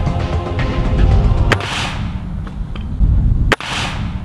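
Two sharp rifle shots about two seconds apart, each followed by a short hiss as the punctured aerosol deodorant can sprays out its contents. Background music plays underneath.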